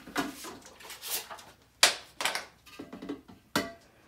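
Parts of a Cuisinart ICE-21 ice cream maker, its aluminium freezer bowl and red plastic base, knocking and clicking together as they are fitted and lifted apart. A few sharp knocks with handling noise between, the loudest about two seconds in.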